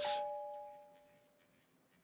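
Music box in the song's outro sounding its last notes: two bell-like tones ring together and fade away within about a second.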